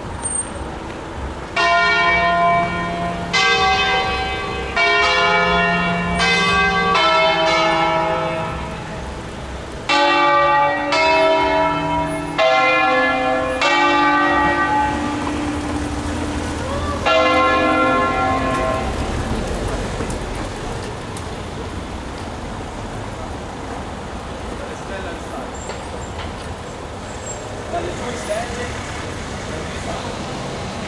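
Church bells of a six-bell ring in C, rung by hand in the Ambrosian style: about a dozen single strokes on different bells in an uneven melodic sequence. The strokes stop a little past halfway, and the last ring dies away into a steady traffic hum.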